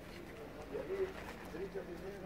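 A dove cooing in a run of soft, smoothly rising-and-falling notes over a low murmur of men's voices.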